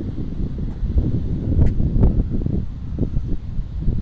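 Wind buffeting the microphone: a gusty low rumble that swells and dips, with a faint click about one and a half seconds in.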